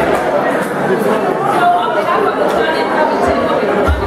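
Many people talking at once in a large room: steady crowd chatter with no single voice standing out.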